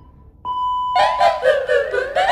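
Electronic workout-timer beep, a steady high tone about half a second long, marking the end of an exercise interval, followed about a second in by a gliding, chime-like jingle.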